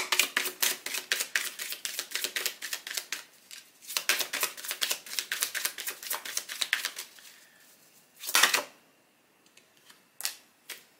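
A deck of oracle cards being shuffled by hand: two runs of rapid, crisp card clicks and flicks lasting a few seconds each, then one short, louder rustle of cards about eight seconds in.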